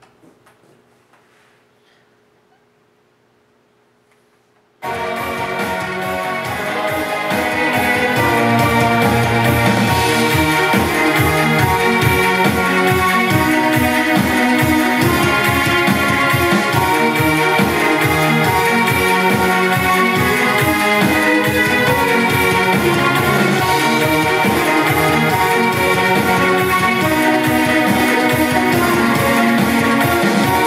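Music with a steady beat played loud through a Bose SoundDock Series 2 iPod speaker dock. It starts suddenly about five seconds in and gets louder over the next few seconds as the volume is turned up.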